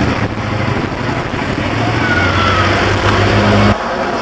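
A loud, steady low engine rumble that cuts off suddenly near the end.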